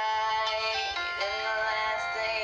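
A song: a woman singing long held notes over a backing track, the melody stepping to new notes about a second in.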